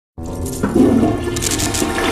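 A toilet flushing: a rushing of water that starts suddenly just after the beginning, with music underneath.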